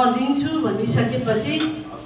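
A woman speaking into a handheld microphone, her voice picked up close; a short pause in her speech near the end.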